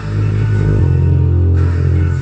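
Bass-heavy electronic music played through a small 4.5-inch subwoofer driver: a deep sustained bass note that steps down in pitch a little under a second in.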